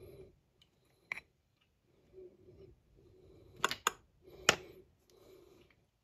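A few small, sharp clicks and taps as a flocked miniature base is handled over paper: one about a second in, then a quick pair and a louder single click a little later.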